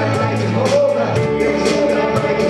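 Live worship band playing a rock-style song: a drum kit keeping a steady beat, about three to four hits a second, under electric bass guitar and sustained pitched instruments.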